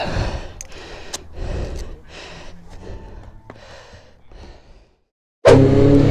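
Irregular puffs of breathy noise on the camera microphone. After a sudden short silence near the end, the Suzuki GSX-R600's inline-four engine cuts in loud and steady as the bike rides along.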